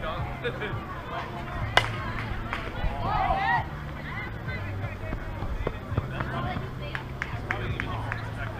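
Softball bat hitting a pitched softball: a single sharp crack about two seconds in, followed by players' shouts and voices.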